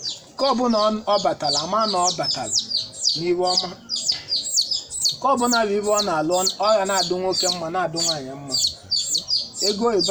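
Small birds chirping steadily, several short falling chirps a second, under a man's voice speaking in long drawn-out phrases, which is the loudest sound.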